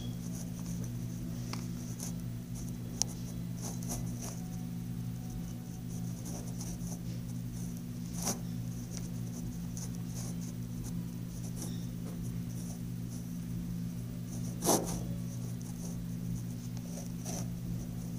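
Hands working slime close to the phone's microphone: scattered small clicks and crackles over a steady low hum. Three sharper clicks stand out, the loudest about three-quarters of the way through.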